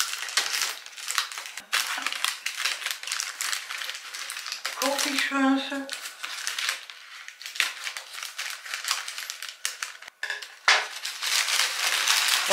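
Brown kraft-paper gift bag crinkling and rustling again and again as hands unwrap it and dig inside. A short hum of a voice comes through about five seconds in.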